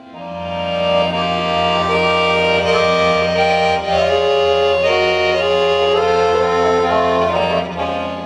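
Piano accordion and violin playing together, the accordion swelling in loudly at the start and carrying a melody of held notes over a sustained bass.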